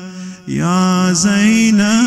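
A man's solo voice chanting a religious lament (noha) in long held, wavering notes with no instruments. It breaks off briefly for breath at the start, then a new phrase begins about half a second in with a dip and rise in pitch.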